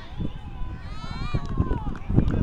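Rugby players shouting calls at a scrum, one voice carrying from about a second in, with a couple of knocks and a steady low wind rumble on the microphone.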